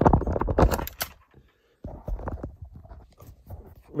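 Handling noise on a desk: a quick clatter of small hard knocks and scrapes in the first second, then a short pause and a quieter run of scraping knocks.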